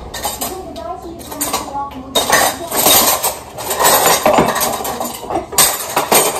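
Dishes, pans and cutlery clattering as they are handled in a kitchen, in short irregular bursts of knocks and clinks, busiest about two to three seconds in and again near the end.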